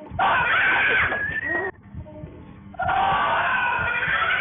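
A woman shrieking in fright at a jump scare: a loud scream of about a second and a half, then after a short break another long stretch of screaming from about three seconds in.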